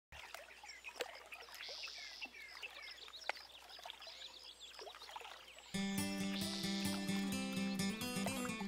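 Faint chirping of birds in the open air, with a few light clicks. About three-quarters of the way in, background music with a held low note comes in and stays.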